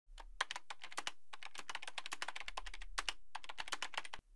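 Computer keyboard typing: a fast, uneven run of key clicks with a couple of brief pauses.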